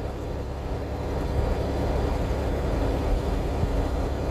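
Semi-truck cab noise while driving: a steady low drone of the engine and road, a little louder after the first second.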